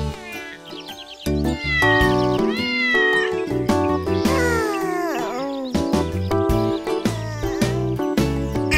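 A cartoon kitten meowing several times, each meow a rising-and-falling call, over a children's song's instrumental backing that comes in louder about a second in.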